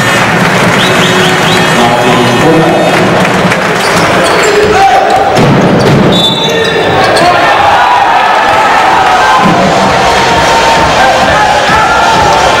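Basketball game in play on a hardwood court: the ball bouncing and sneakers squeaking over a steady, loud din of crowd voices in the arena.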